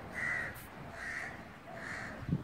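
A bird giving short, harsh calls in a steady series, three in a row, the first the loudest.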